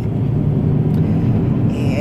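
Steady low rumble of a moving car heard from inside its cabin: engine and road noise while driving.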